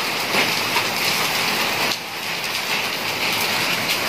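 Heavy rain mixed with small hailstones falling on wet brick paving: a dense, steady hiss of countless small impacts.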